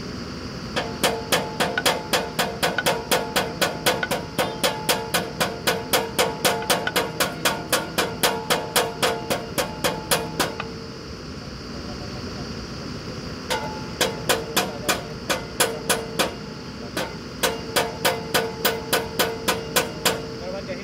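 Quick, even hammer strikes on metal, about four a second, each with a short ringing tone. There is one long run of about ten seconds, then two shorter runs after a pause, over the steady low hum of the drilling rig's engine.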